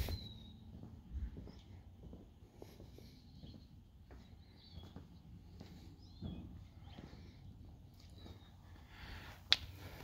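Faint footsteps of someone walking over a concrete paver patio, with one sharp click about nine and a half seconds in.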